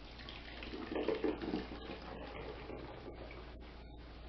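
Thin vinegar sauce poured from a stainless steel bowl through a strainer into a plastic bottle, the liquid splashing and trickling. The pour is loudest about a second in, then settles to a steady trickle.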